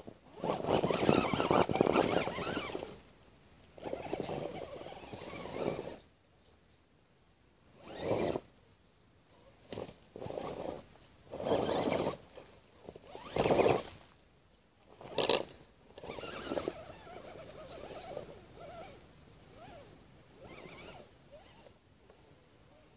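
Radio-controlled Axial Wraith rock crawler's brushless electric motor and geared drivetrain whirring in stop-start bursts as it is throttled up a rocky dirt trail, with its tyres scrabbling over rock and leaves.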